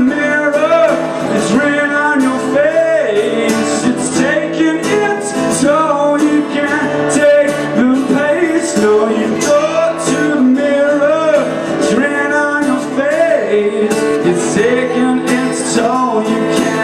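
Live acoustic guitar strummed steadily with a man singing a wavering melody over it.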